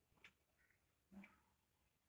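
Near silence with faint, evenly spaced ticks about once a second, and one brief, slightly louder soft sound about a second in.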